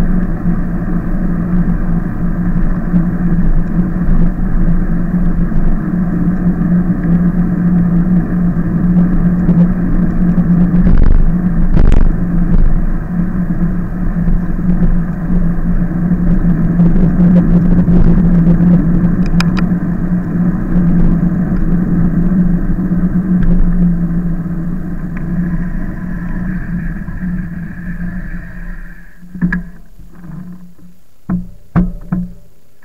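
Steady, muffled rumble of an e-bike in motion picked up by a bike-mounted camera, with wind and tyre noise on asphalt over a constant low hum. There are a couple of knocks from bumps about eleven and twelve seconds in. The noise eases off near the end as the bike slows.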